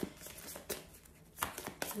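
A deck of tarot cards being handled in the hands, giving a few short, soft clicks and snaps of card against card.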